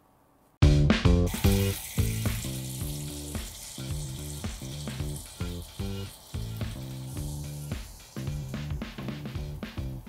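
Tomato sauce sizzling and simmering in a skillet, starting about half a second in, under light background music.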